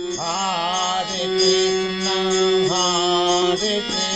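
A devotional chant sung for the mangala arati over a steady held drone, with steady high ringing tones above it.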